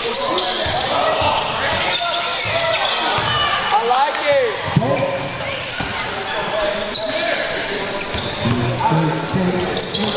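Basketball bouncing on a hardwood gym floor, with indistinct voices of players and spectators throughout, all echoing in the hall.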